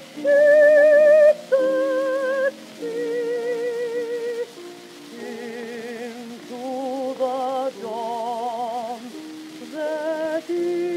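Contralto voice singing long notes with a wide vibrato over piano accompaniment, on an acoustic-era 78 rpm record from 1924 with surface noise behind it.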